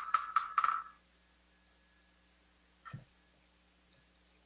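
Buddhist chanting instruments closing a chant: a wooden fish knocked in a quick run of about five strokes a second over a ringing bowl bell, stopping sharply about a second in. Then one soft knock near the end.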